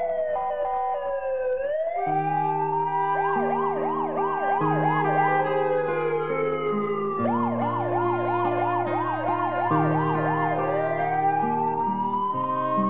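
Electronic ambulance siren alternating between a slow wail and a fast yelp. It falls, then rises, and about three seconds in switches to a quick warble of roughly four cycles a second. It then slides down slowly and yelps again for about three seconds before rising back into the wail near the end.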